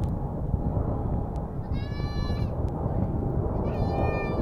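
Pratt & Whitney PW4074 turbofans of a Boeing 777-200 at takeoff thrust, a steady distant roar as the jet climbs away. Over it, two short high pitched calls about two seconds apart.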